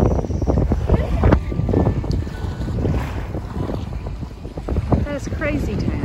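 Wind buffeting the microphone: a loud, gusty low rumble with irregular thumps. A voice is heard briefly near the end.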